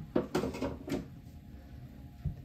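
A few short knocks and clatters of plastic in the first second, then quiet room tone: the clear lid and tub of a plastic storage box being handled and set down.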